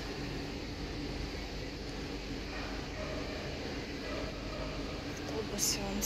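Steady street background noise with faint distant voices, and a short high rustle near the end.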